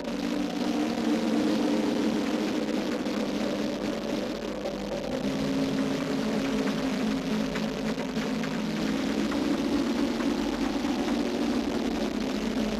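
Industrial acid techno track, electronic: a sustained, noisy droning texture with a thick low-mid hum under a hissing wash, swelling up at the start and then holding steady without a clear beat.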